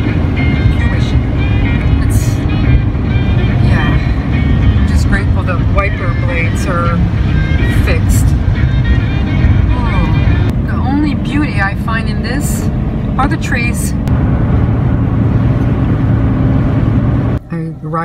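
Steady low road and engine noise heard inside a van driving on a snowy highway, with music and a singing voice playing over it. The road noise cuts off abruptly near the end.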